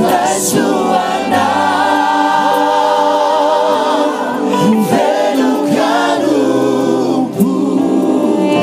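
Live gospel worship song: a male lead singer with backing vocalists over a band. A long held note, sung with vibrato, falls in the first half.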